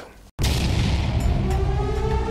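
A sudden heavy boom about a third of a second in, opening a piece of soundtrack music: a low rumble under held tones that slowly rise in pitch.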